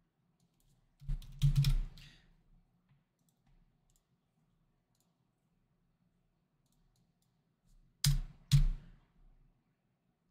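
Two short runs of clicks and light knocks, one about a second in and one about eight seconds in, with near silence between them.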